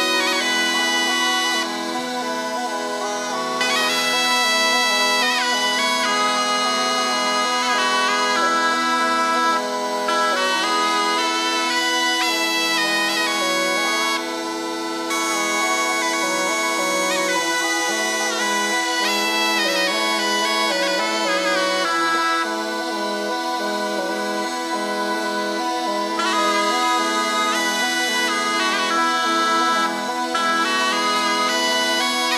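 Instrumental folk tune on bagpipes: a melody with quick ornamented note changes over steady, unbroken drone notes.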